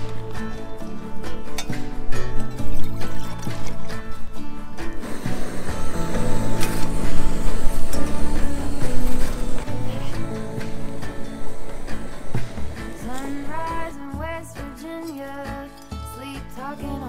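Background music, dropping in loudness near the end.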